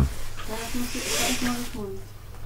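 A woman's voice speaking softly and untranscribed, with a drawn-out hiss in the middle.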